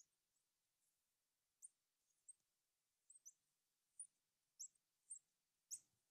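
Faint squeaks of a marker pen on a glass lightboard while words are written: about nine short, high chirps at uneven intervals.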